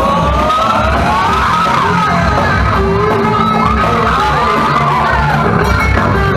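A live band playing amplified music on drums and electric guitars, with a wavering melody line over a steady, pulsing bass beat.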